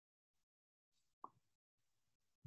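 Near silence, broken once a little over a second in by a single brief, faint soft thud.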